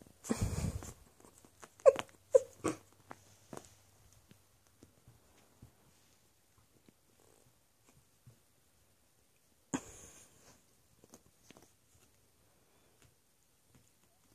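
Puppies giving a few short, high yips about two seconds in. Around them are brief scuffling sounds of paws and bodies on a mattress, one just after the start and one near ten seconds.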